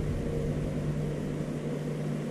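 Steady low mechanical hum with a constant tone, the background drone of a running appliance or fan in a small workshop.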